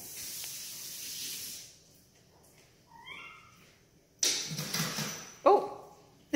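A kitten's short, rising meow about three seconds in, after a stretch of soft hissy noise; louder noisy bursts and a falling call follow near the end.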